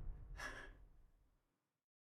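A woman's single sharp gasp about half a second in, over the last of a low musical drone that fades away.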